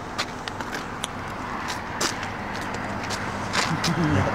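Steady outdoor noise of a passing road vehicle mixed with wind, growing slightly louder toward the end, with scattered small clicks and crackles over it.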